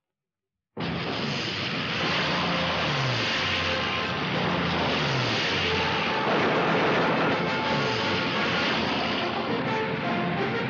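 Twin piston-engined de Havilland Mosquito bombers flying low, engine roar starting abruptly after a moment of silence, its pitch falling several times as aircraft pass, over an orchestral film score.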